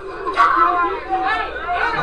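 People talking over one another in chatter, with a short sharp noise about half a second in.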